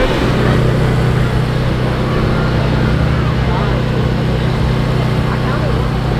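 Portable generator running at a steady speed, a constant engine hum.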